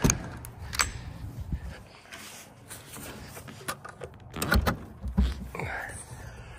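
Enclosed cargo trailer's side door being opened: a sharp click of the latch handle at the start and another just before a second in, then handling noise and a cluster of knocks and low thumps about four to five seconds in.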